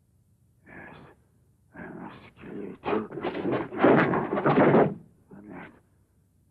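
A man's heavy, ragged breathing and groaning: a string of gasps that grow louder, are loudest around the middle, and drop away after about five seconds, with one short gasp near the end.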